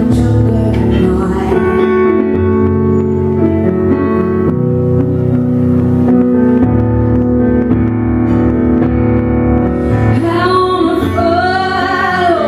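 Live solo song on an electric keyboard: sustained piano chords changing every second or two, with a woman singing over them, most clearly near the end.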